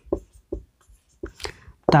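Marker pen writing on a whiteboard: a run of short, separate strokes with brief pauses between them.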